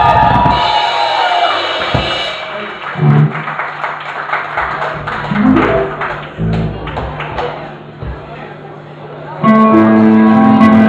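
A crowd cheers, dying away after about two seconds. Then come a few scattered drum thumps and a held low bass note from a live rock band on stage. The full band starts playing loudly, with keyboard, about half a second before the end.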